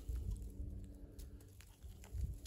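Faint crackling of a dry clay soil clod being broken apart by hand, a few small crumbles over a low rumble.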